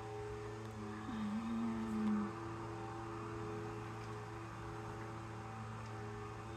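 Steady low hum with several sustained tones over it, and a single held low note from about one second in to about two seconds in.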